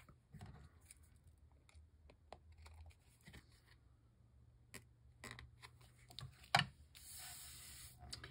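Scissors trimming a paper cut-out: scattered quiet snips and clicks, with one louder click about six and a half seconds in and a short papery rustle near the end.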